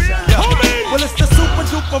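Hip hop track: a deep bass line and kick drum under a man's rapping voice.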